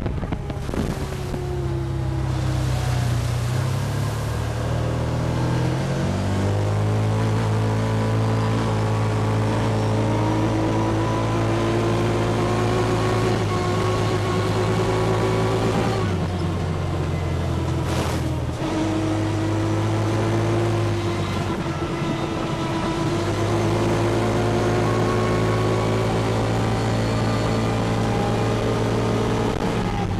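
Side-by-side UTV engine droning steadily as it drives along a rough gravel road, its pitch rising and falling slowly with speed. A single knock stands out about two-thirds of the way through.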